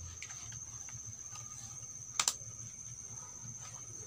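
Faint steady high-pitched drone of insects, likely crickets, with one sharp click a little after two seconds in.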